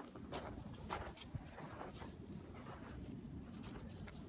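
Irregular footsteps crunching on loose gravel.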